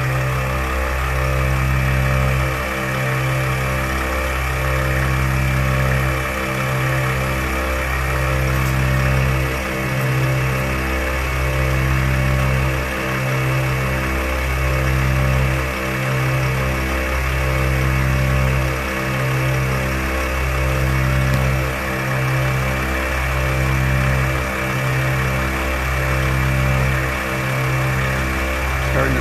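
ARB twin 12-volt air compressor running steadily under load, pumping air into two 34-inch tires at once as their pressure builds. The hum swells and dips in a slow, regular beat.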